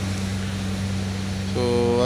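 Steady rain falling on wet pavement, with a constant low hum underneath.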